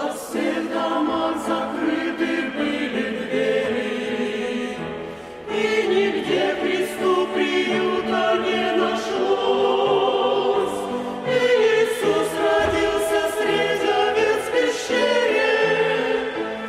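Mixed church choir of men's and women's voices singing a hymn together, with a brief breath between phrases about five seconds in.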